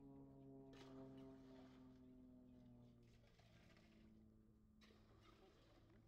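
Faint, distant drone of an aerobatic plane's piston engine and propeller in flight. Its pitch falls over the first two seconds, then holds steady.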